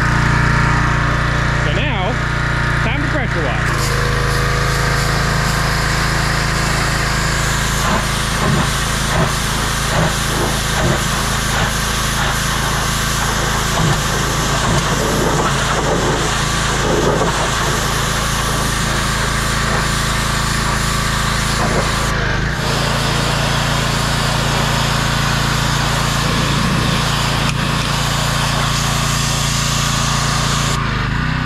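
Briggs & Stratton engine of a Craftsman gas pressure washer running steadily, with the high-pressure spray hissing from the wand onto the metal service bed. The engine note shifts about four seconds in.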